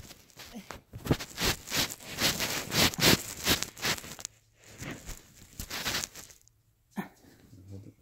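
A run of irregular rustling and scuffing noises from clothing and handling close to the microphone, with a short pause about four seconds in and a single sharp knock about seven seconds in.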